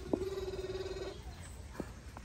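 A single drawn-out call held at a steady pitch for about a second, then stopping.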